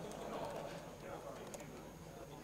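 Faint murmur of voices in a hall, with a few light clicks of laptop keys being typed on, one clearer click about one and a half seconds in.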